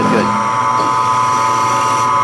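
Milling machine spindle running with a steady whine while a drill bit in the collet pecks down into an aluminium drive rail.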